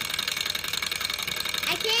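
Small hot-air Stirling engine running on its alcohol burner, its piston and flywheel making a fast, steady mechanical clatter.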